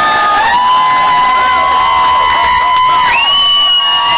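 Crowd of protesters cheering and yelling, with several long, high-pitched held cries overlapping over a continuous din.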